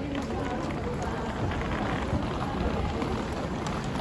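Busy pedestrian street ambience: footsteps and the steady roll of a wheeled suitcase on the paving, with voices of passers-by in the background.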